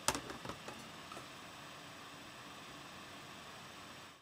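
Faint steady hiss of room tone, with one sharp click right at the start and a few light ticks during the first second.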